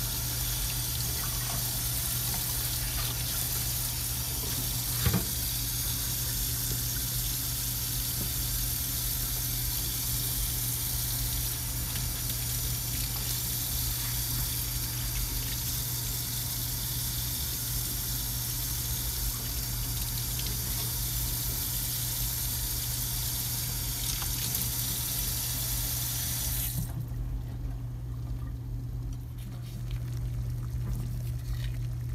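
Kitchen faucet running steadily into a stainless steel sink while vegetables are rinsed under it, shut off suddenly near the end. A low steady hum lies underneath, with a single knock about five seconds in.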